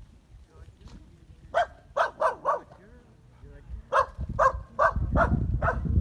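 A herding dog barking in two quick bouts: four sharp barks, then after a pause of about a second and a half, five more.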